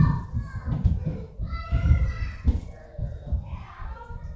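Indistinct voices talking, a child's voice among them, over frequent low bumps and thumps.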